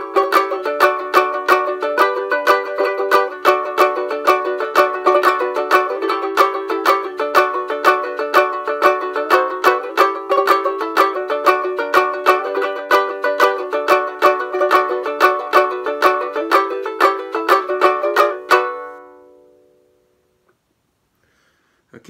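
1974 Abbott Junior banjo ukulele, tuned to D, strummed in a steady rhythm of chords. The playing stops about eighteen seconds in and the last chord rings away to silence.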